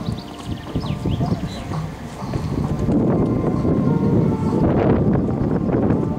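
Horse cantering on an arena's sand footing, its hoofbeats getting louder from about two seconds in as it comes close.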